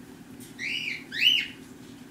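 Blue-and-gold macaw giving two short whistled calls, each rising and then falling in pitch, the second louder than the first.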